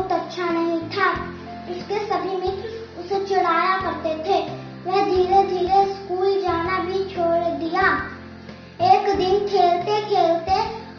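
A young girl singing a melody in held notes with short breaths between phrases, over a low instrumental accompaniment whose notes change every second or so.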